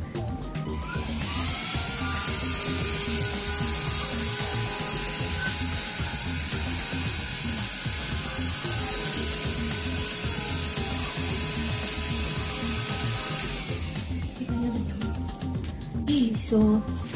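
Pery Smith Extreme XS1 cordless handheld vacuum running in air-blower mode: its motor spins up with a rising whine about a second in, runs steadily with a high-pitched whine, then winds down about two seconds before the end.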